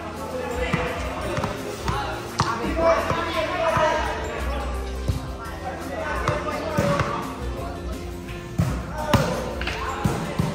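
A volleyball being struck by hands: about five sharp slaps at irregular moments, over voices and music.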